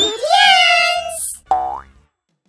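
Cartoon sound effects: a springy, boing-like pitched tone slides upward and holds for about a second, a short hiss follows, and a second quick rising glide comes near the end before the sound cuts off.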